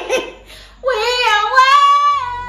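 A woman laughs briefly, then about a second in sings unaccompanied, one long high note that wavers, rises a little and is held.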